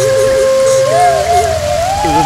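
Heavy rain pouring steadily, with long held and wavering melodic tones of a background score over it.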